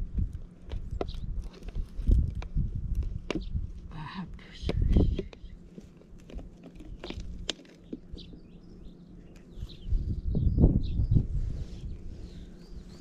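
Gusts of wind rumbling on the microphone, with knocks and crinkles from a plastic bottle being handled as it is fitted to a birch-sap tapping tube. A few faint high chirps come near the end.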